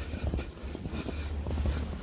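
Wind buffeting the phone's microphone in a snowstorm, a steady low rumble, with the uneven crunch of footsteps through deep snow.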